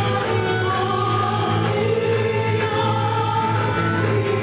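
Live small ensemble: a woman singing long held notes into a microphone over flute and acoustic guitar accompaniment.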